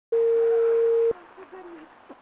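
Telephone ringback tone on a call to the emergency line: one steady beep about a second long, cut off by a click as the line is picked up.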